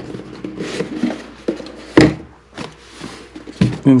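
Cardboard riflescope box being handled and opened, with its lid coming off and a sharp knock about halfway through among smaller clicks and rustles.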